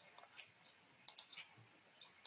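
Near silence: room tone with a few faint, short clicks around the middle.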